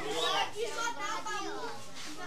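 Several people talking at once, children's voices among them, with no clear words.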